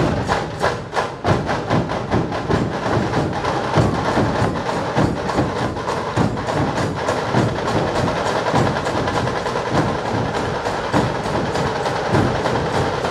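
Large ensemble of dhol drums beaten with sticks, playing a fast, dense rhythm without a break.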